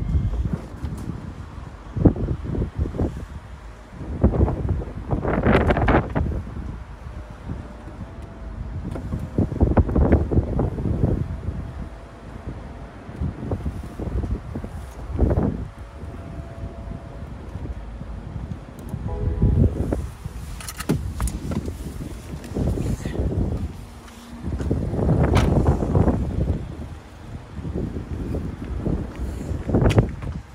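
BMW 430i (F33) convertible's folding hard-top opening and stowing into the boot. A faint steady whine from the roof mechanism runs through roughly the first half, with scattered clicks. Gusts of wind on the microphone are the loudest sound.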